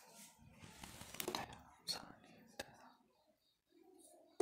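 Faint whispered speech with a few sharp clicks about a second to two and a half seconds in.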